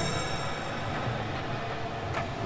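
Quiet kirtan accompaniment in a pause between chanted lines: a faint steady high ringing over a low rumble, with no voice.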